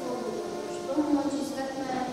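A child reciting aloud into a microphone, with music playing underneath.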